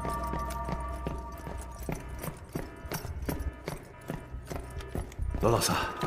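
Sharp knocks about three times a second, evenly spaced, over a low hum and held tones in a suspense film soundtrack. Voices come in near the end.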